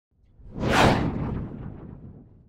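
Cartoon whoosh sound effect of a superhero flying off: a rush that swells to a sharp peak just under a second in, then trails away over the next second or so.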